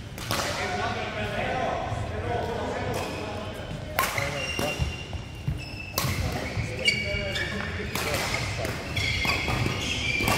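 Badminton rally: sharp racket strikes on the shuttlecock every second or two, with high squeaks of players' shoes on the court mat, echoing in a large hall.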